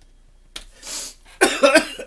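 A man coughing: a short quiet spell, then a drawn breath in, then a run of harsh coughs near the end.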